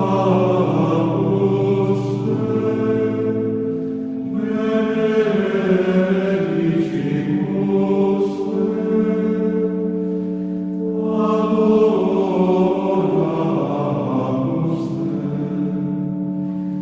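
Background music of slow, chant-like choral singing: long sustained vocal phrases over held low drone notes, swelling and easing every few seconds.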